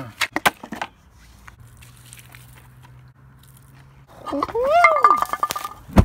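A few sharp clicks in the first second, then a quiet stretch with a faint low hum, then a long excited shout from a man, rising in pitch, starting about four seconds in as the gasoline-soaked pile catches fire.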